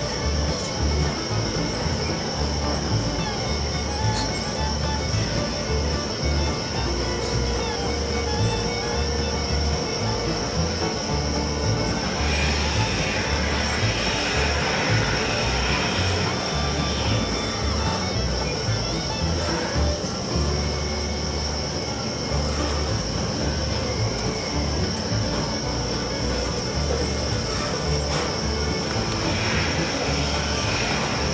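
Hand milking of a cow: streams of milk squirting from the teats into a plastic pail, hissing most clearly for a few seconds near the middle. Music plays throughout.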